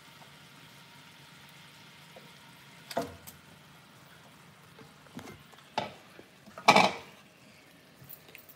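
Pork frying in oil and sugar in a frying pan, with a faint steady sizzle as it is stirred with a wooden spoon. A few sharp clatters of the spoon and bowl against the pan break in; the loudest comes near the end.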